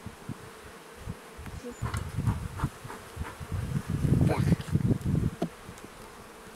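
Honeybees buzzing around an open, well-populated hive during an inspection, with bees passing close to the microphone so the buzz swells and fades; it is loudest from about four to five seconds in.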